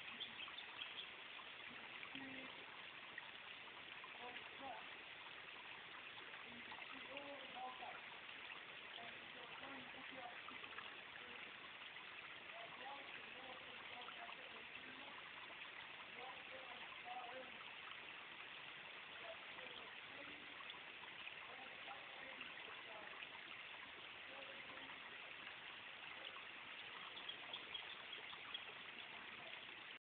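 A faint, steady rushing background noise with scattered faint, indistinct voices.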